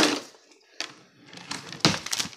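Handling noise as a booklet and papers are grabbed: a sharp knock at the start and another near the end, with rustling between.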